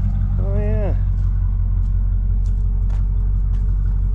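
Pickup truck engine idling with a steady low hum. A short vocal sound comes about half a second in.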